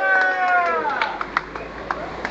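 A person's long, drawn-out wailing call, held on one pitch and then falling away about a second in. Several sharp claps or clicks follow.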